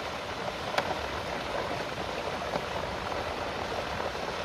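Water gushing from inlet pipes into a trout-farm pond, a steady splashing rush. A single brief click about a second in.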